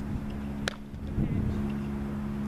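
A softball changeup popping into the catcher's mitt: one sharp, short smack about two-thirds of a second in, over a steady low motor hum.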